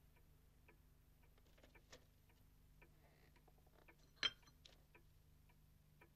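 Near silence with faint ticking and small clicks, and one sharper clink of a porcelain teacup about four seconds in.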